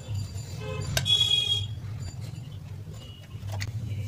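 A short horn-like toot about a second in, lasting about half a second, over a low steady hum, with a few faint clicks.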